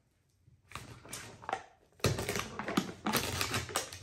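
Foil peel-off seal being pulled off the top of a Pringles can: a run of crinkling and crackling, densest and loudest over the last two seconds.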